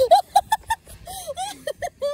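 A person laughing: a quick run of short giggles, then a longer drawn-out laugh note and two more brief giggles near the end.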